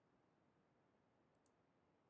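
Near silence, with a couple of extremely faint ticks about one and a half seconds in.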